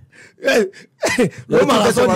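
Speech only: a man's voice in short exclamations, then talking.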